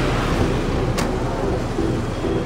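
Engines and road noise of a convoy of small delivery mini-trucks driving past, a steady traffic sound with one short sharp click about a second in.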